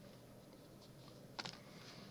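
Near silence: room tone, with one faint click about one and a half seconds in and a few weaker ticks near the end.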